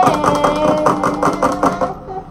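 A woman singing a held note over a quickly strummed acoustic guitar, the song dying away near the end.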